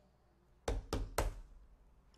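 Three quick knocks, about a second in, as from hands on a wooden pulpit.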